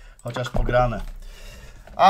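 A man's voice making a short murmured sound with no clear words, lasting about a second, then fading to a quieter stretch.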